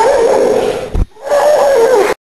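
A person's high, drawn-out wail: two long wavering notes, broken by a short gap about a second in.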